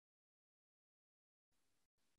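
Near silence: the recording is silent, and a very faint hiss comes in near the end.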